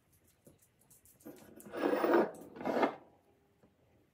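Cotton cheesecloth rustling and rubbing as hands unfold it from strained Greek yogurt: two scraping rustles, a longer one just over a second in and a shorter one near three seconds.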